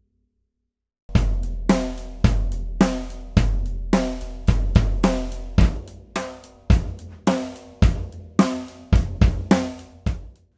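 Drum-kit groove built on an unmuffled bass drum with a single-ply coated G1 batter head, miked through the front head's port, starting about a second in. The kick has a lot of sustain and a lot of overtones, ringing on between strokes that come about twice a second, with cymbal hits from the rest of the kit on top.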